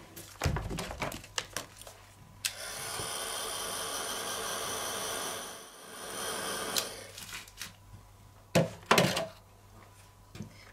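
Handheld craft heat tool drying gilding glue: it is switched on about two and a half seconds in, and its fan runs with a steady blowing hiss and faint hum for about four seconds before it is switched off. Handling knocks come before it, and a couple of louder knocks come near the end.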